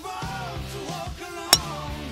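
Background hip-hop music with sung vocals, and about one and a half seconds in, one sharp crack of a golf driver striking the ball off the tee.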